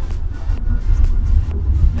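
Steady low tyre and road rumble inside the cabin of a 2023 Tesla Model Y at freeway speed, with no engine sound, under music with a light regular beat.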